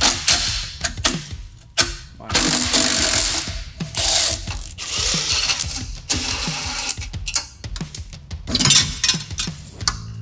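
Aerosol penetrating oil (WD-40) sprayed in hissing bursts onto exhaust fittings, with ratcheting and clicking of hand tools working on the exhaust.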